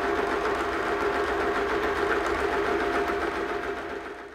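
Small domestic sewing machine running steadily at speed, stitching a side seam through layers of velvet and lining fabric.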